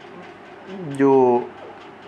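Speech only: a man's voice holding out one drawn-out word, a hesitation, set in low room noise.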